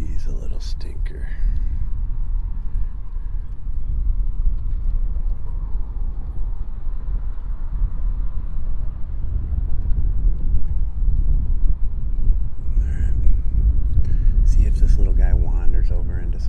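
Wind buffeting a phone's microphone outdoors by open water: a low, gusting rumble that grows a little louder in the second half, with faint voices near the start and near the end.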